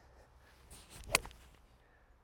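A golf iron, the TaylorMade Tour Preferred CB, striking a ball off the turf: a faint swish of the downswing, then one sharp click of impact a little past a second in. It makes quite a noise off the face, louder than forged irons.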